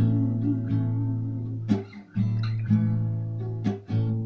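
Acoustic guitar strummed, its chords ringing on; the level dips briefly about a second and a half in and again near the end, and each time a fresh strum comes in.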